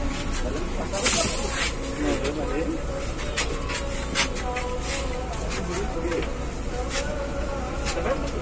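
Coach bus cabin in slow traffic: the engine drones low and steady, with a short burst of air hiss about a second in and scattered clicks and rattles.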